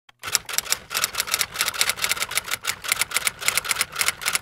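Typing: rapid, uneven clicking of keys, about six strokes a second.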